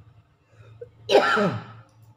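A man's voice: one short, loud vocal sound about a second in, with a breathy, noisy start and a falling pitch.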